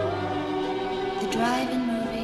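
Music with choral singing: voices holding long notes with vibrato, moving to a new note about a second and a half in.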